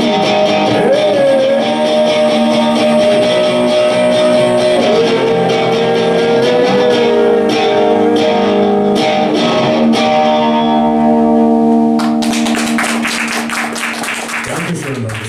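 Solo electric guitar playing the end of a song, with notes bending in pitch, then a final chord held and left ringing from about ten seconds in. Applause starts about two seconds before the end.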